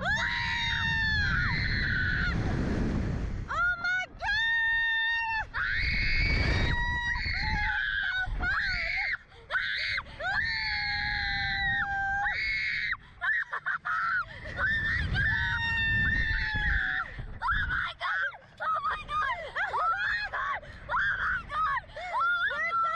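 A girl and a woman screaming on a catapult thrill ride: long high-pitched screams at first, breaking into shorter, choppier yelps near the end. Rushes of wind noise on the microphone come and go as the seat is flung through the air.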